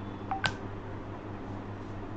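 A brief electronic blip with a sharp click about half a second in, over a low steady hum, as the quiz question screen comes up.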